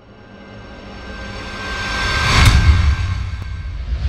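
Cinematic logo-intro sound design: a swelling riser that builds from silence to a sharp hit about two and a half seconds in, over a deep rumble, with a whoosh near the end.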